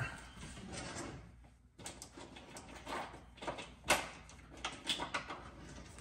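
Scattered faint knocks and clicks of a kitchen drawer and utensils being handled while a spatula is fetched. The loudest knock comes about four seconds in.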